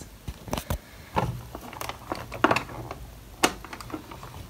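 Black Winsor & Newton metal watercolour tin being worked open by hand: a series of about seven sharp clicks and taps of fingers and lid on the metal, spread over a few seconds.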